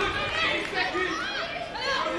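Indistinct chatter of many overlapping voices in a large hall, with no single clear speaker.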